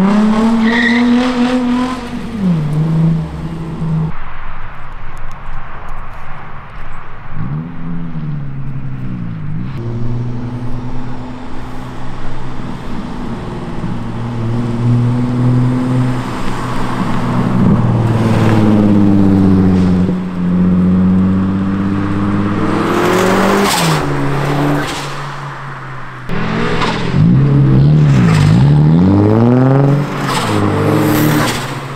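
Drift cars, among them a Nissan 350Z and a turbocharged Mazda Miata, revving hard and easing off again and again as they slide. Bursts of tyre squeal come in the second half.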